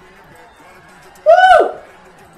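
A single loud whoop of 'woo', its pitch rising and then falling steeply, about a second and a half in, over an otherwise quiet background.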